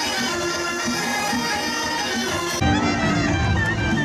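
Traditional folk music, a reedy wind instrument carrying a melody over accompaniment. About two and a half seconds in, it cuts abruptly to a louder, deeper mix.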